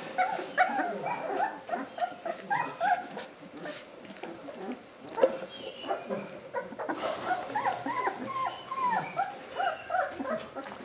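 Several basset hound puppies whimpering and yipping as they play and nip at each other, many short cries overlapping throughout. There is one sharp, louder sound about halfway through.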